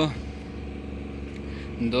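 Engine of a parked truck crane idling steadily, a low even hum.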